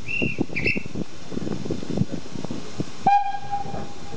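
Two short, high blasts on a railway guard's whistle, then the steam locomotive's whistle sounds one loud, steady note about three seconds in: the departure signal and the driver's reply as the train is about to leave. Scattered knocks from the train run underneath.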